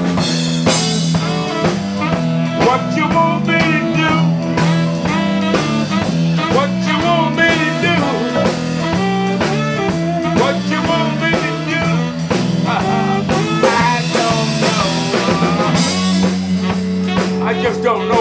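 Live blues band playing an instrumental passage: electric bass, drum kit and saxophone.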